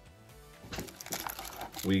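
Hands rummaging in a cardboard box and handling its plastic-wrapped contents: soft rustles and light clicks and crinkles from about a second in.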